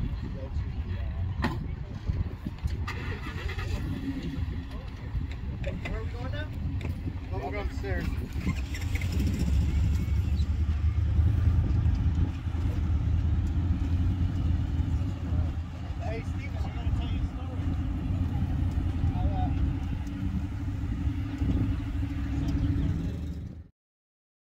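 Heavy-duty pickup truck engine running and pulling away across sand, over a steady low rumble, with faint voices in the background. The sound cuts off suddenly near the end.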